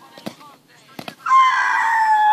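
Faint slaps of bare hands and feet on asphalt during a handspring, then, about a second and a half in, a loud, long, high call that holds its pitch and falls away at the end.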